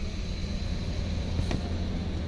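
Steady low hum with a single light click about one and a half seconds in.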